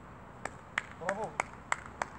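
A football being tapped by a foot while dribbling: four sharp, irregularly spaced touches, with a short called word in between.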